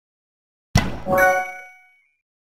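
Logo sound effect: a sudden hit, then a bright ringing chime of several tones that dies away within about a second.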